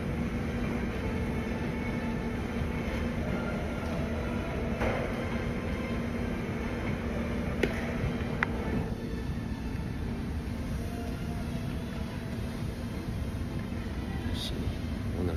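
Treadmill running at walking pace: a steady low motor hum and belt rumble, with two light clicks a little past halfway.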